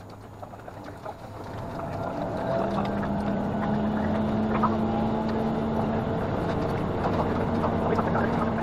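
Diesel railcar engine under power as the train pulls away from a station: a steady drone that swells over the first two to three seconds, then holds at a sustained hum.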